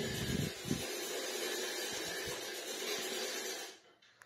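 A steady faint hiss of background room noise, with a few soft taps in the first second and one about two seconds in; it fades out to silence near the end.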